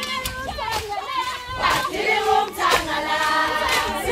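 A group of Zulu women singing a traditional song together in loud, chanting voices, with sharp percussive hits scattered through the singing.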